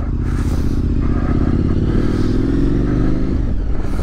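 Motorcycle engine pulling away under throttle, its pitch rising steadily for about three seconds and then dropping near the end.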